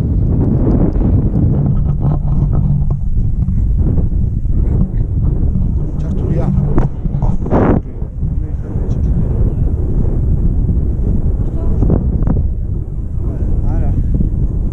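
Wind buffeting the camera microphone, a loud, steady low rumble.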